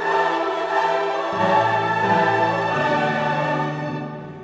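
Background classical music: a choir singing with an orchestra in long held chords, growing quieter near the end.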